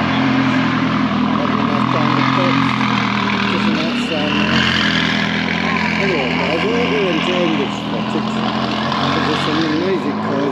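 McLaren GT race car engine idling, then the car pulls away slowly and its engine sound fades about four seconds in, with people talking around it.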